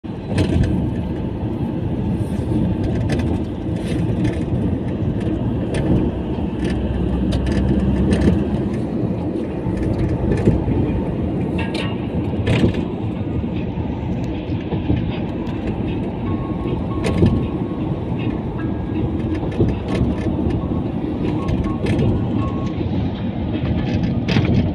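Road and wind noise of a moving car heard from inside the cabin: a steady low rumble with frequent sharp clicks and rattles.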